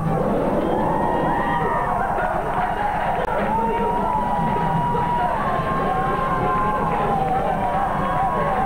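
A competition crowd cheering and shouting over the routine's backing music, with many voices at once and no single speaker.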